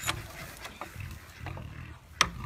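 A wooden henhouse door being unlatched and opened: a sharp click at the start, then a couple of fainter knocks, over a low rumble.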